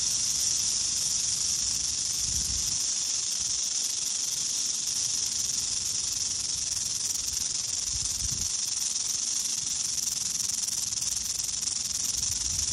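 A western diamondback rattlesnake shaking its raised tail rattle in a steady, unbroken high buzz. This is the defensive warning rattle of a coiled snake.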